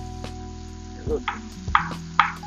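A chef's knife slicing a garlic clove on a wooden cutting board: a series of short, sharp cuts, the louder ones in the second half, over quiet background music.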